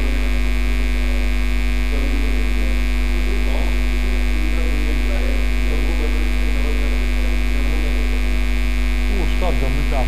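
Steady, loud electrical mains hum running through the recording, with faint, indistinct voices now and then, a little louder near the end.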